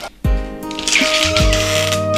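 Background film score of held synth chords with deep bass-drum hits, a cymbal wash joining about a second in.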